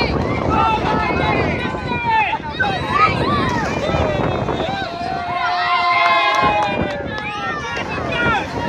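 Many people's voices shouting and calling over one another, with one long drawn-out call about five seconds in.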